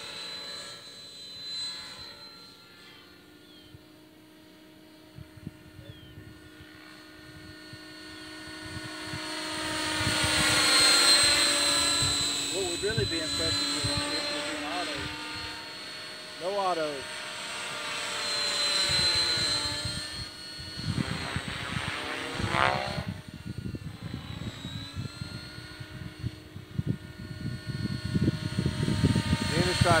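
Outrage Fusion 50 electric RC helicopter flying overhead, its Scorpion motor and rotor head governed at about 1,950 RPM giving a steady high whine of several tones. The whine swells louder and bends in pitch as the helicopter passes closer, around 11 s and again around 23 s.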